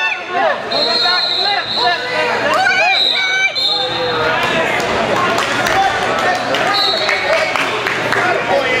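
Many voices talking and shouting at once in a large gymnasium at a wrestling tournament, with three short, high, steady whistle blasts.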